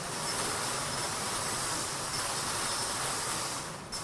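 Wire lottery cage full of numbered balls being turned, the balls tumbling in a continuous rattle that stops abruptly at the very end. This is the drum spun to draw the number for the name just read out.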